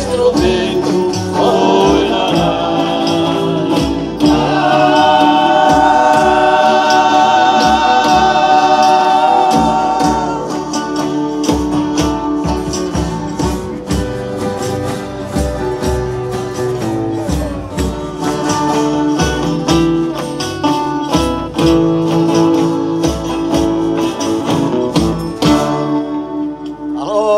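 Folia de Reis group singing in several voices to strummed acoustic guitars and steady hand percussion; the voices hold one long chord from about four to ten seconds in.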